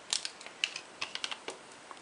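Small irregular clicks and scratches of a compass point prying a 3D-pen plastic shape up off a plastic Lego baseplate, about two or three light ticks a second.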